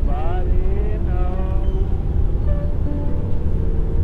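Steady low rumble of a car driving, with a voice from an old-time radio broadcast playing over it, sounding thin and cut off at the top.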